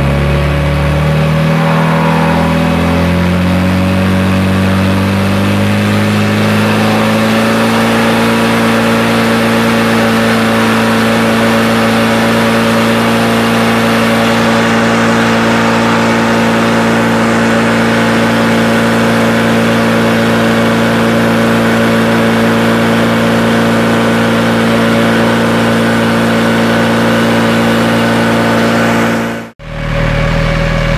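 Portable fire pump (PFPN 10-1000) running under load. Its engine speed rises over the first several seconds as the discharge pressure is brought up to 10 bar, then holds steady. The sound breaks off for a moment near the end.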